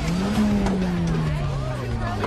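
A car engine revs up at the start and then winds slowly down in pitch, over crowd chatter.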